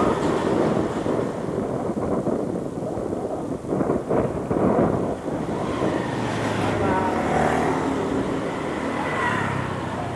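Wind buffeting the microphone of a camera on a moving bicycle, with street traffic; from about six seconds in, motorbike and small-truck engines pass nearby.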